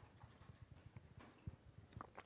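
Near silence with faint, irregular low knocks and bumps: handling noise from a microphone being passed along.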